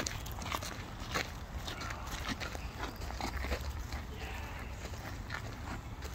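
Footsteps crunching on gravel and dirt at a walking pace, irregular short crunches over a low rumble of wind and handling on the phone microphone.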